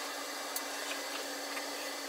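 Steady background hiss with a faint low hum, broken by a few faint small clicks.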